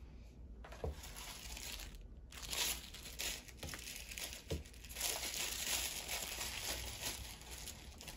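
Crinkly plastic packaging rustling and crackling as it is handled and opened, in two stretches with a short break about two seconds in, plus a few soft knocks.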